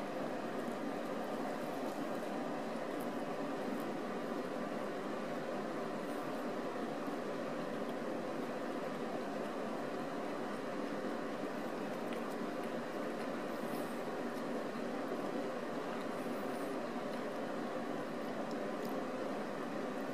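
A steady, even hum like a ventilation fan or air conditioner, with faint pitched tones in it and no change throughout, plus a few faint clicks.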